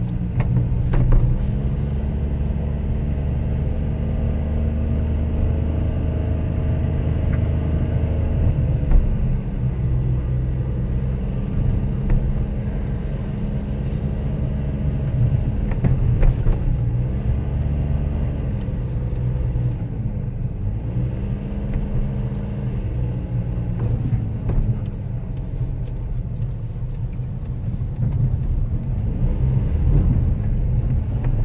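Car engine and road noise heard from inside the cabin while driving, a steady low hum. In the second half the engine's pitch dips and rises several times as the car slows and speeds up.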